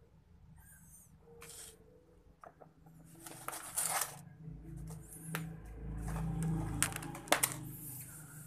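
Clear plastic compartment tackle box being handled and closed: a series of sharp plastic clicks and rattles with rustling, over a low handling rumble in the second half.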